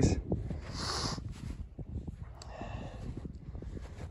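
Footsteps crunching through snow in a string of short ticks, over a low rumble of wind on the microphone.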